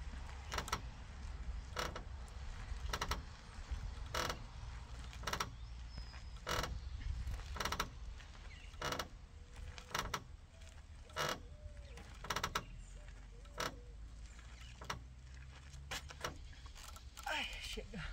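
Rope-hung wooden playground swing creaking in a steady rhythm as it swings back and forth under an adult's weight, one creak roughly every second at each end of the arc.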